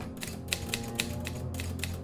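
Quiet background music: held low tones with a fast, even ticking, several ticks a second.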